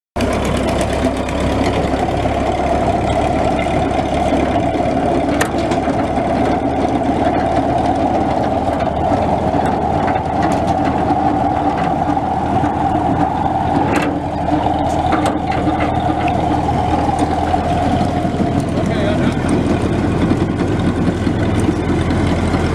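Small tractor engine running with a Bush Hog 105 rotary cutter driven off its 540 PTO: a steady engine and cutter hum, running smoothly, with a few brief ticks. About nineteen seconds in, the higher part of the hum fades away.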